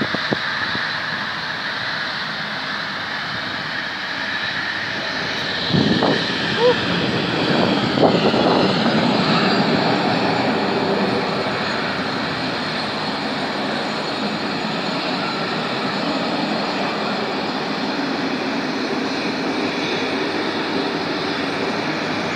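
Jet engine roar of a McDonnell Douglas MD-80 airliner landing and rolling down the runway, steady throughout, with a high whine that falls in pitch about seven or eight seconds in.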